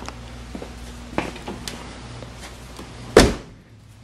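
Rear hatch of a 1986 Ford Mustang GT (Fox-body hatchback) being closed: a few light clicks as it is lowered, then one loud slam about three seconds in as it shuts.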